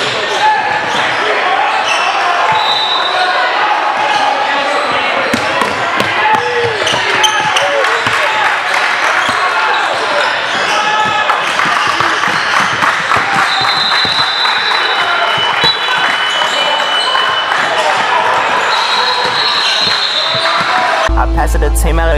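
Indoor basketball game sound: a ball being dribbled on the hardwood, a few brief high sneaker squeaks, and players and spectators calling out, echoing in the gym. Music cuts in abruptly near the end.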